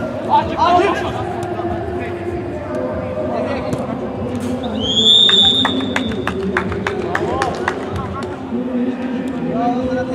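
Referee's whistle: one long blast about five seconds in, rising at the start and then held, the full-time whistle, followed by a quick run of sharp claps, with men's voices throughout.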